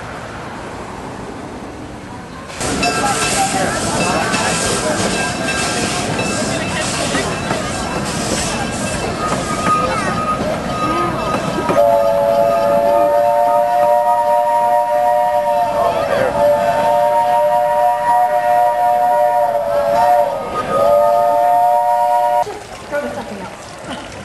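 A steam locomotive on the Poway-Midland Railroad. Loud hissing with a regular pulsing beat starts suddenly. The engine's chime whistle then sounds a three-note chord for about ten seconds, sagging in pitch twice before it cuts off.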